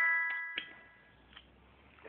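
The last notes of a chiming electronic tune ring out and fade away over about a second, followed by a few faint clicks.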